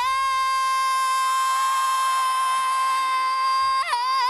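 A woman's voice holds one long sung note, steady in pitch for nearly four seconds, then a quick dip and turn in pitch near the end. It is heard dry through an isolated vocal-microphone feed, with no band behind it.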